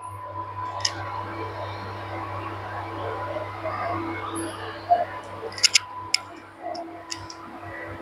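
Induction cooktop running under a steel saucepan of milky tea: a steady hum with a thin constant tone over a faint hiss, and a few faint clicks.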